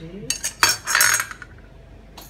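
Metal kitchenware clattering: a few sharp clinks, then a loud scraping rattle lasting under a second, from aluminium pots and utensils being handled.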